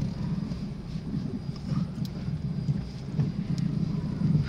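Steady low rumble of a car driving slowly on a wet, rough rural road, heard from inside the cabin, with a couple of faint ticks.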